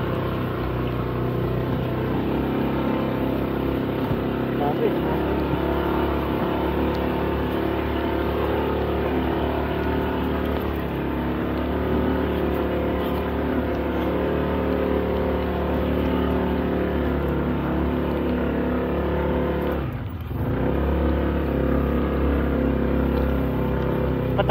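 Vehicle engine running steadily as it travels along a rough dirt track, with a brief easing off of the throttle about twenty seconds in.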